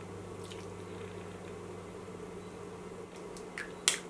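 Lipstick being applied to the lips, faint soft smearing sounds over a steady low room hum, with a short sharp click near the end.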